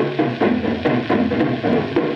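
Traditional jazz band playing from a 78 rpm record, in a stretch where the horns thin out and the drums and rhythm section carry the beat.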